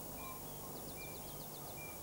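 Faint birds chirping: scattered short high chirps and a quick run of ticking notes about a second in, over a faint steady low hum.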